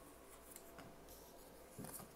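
Faint rubbing and sliding of Baralho Cigano cards being dealt onto a cloth-covered table, with a few soft clicks and a slightly louder tap near the end as a card is laid down.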